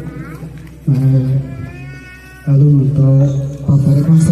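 A man's voice speaking into a microphone through a loudspeaker, in long phrases with short pauses.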